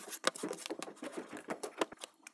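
Eyeshadow palette cases being set down and slid across a hard tabletop: a quick run of light clicks, taps and soft scrapes as they are rearranged.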